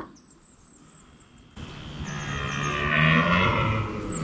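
A red deer stag roaring: one long, low bellow starting about a second and a half in, dropping in pitch as it fades near the end.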